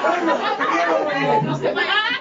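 Only speech: several people talking over one another, at a steady level.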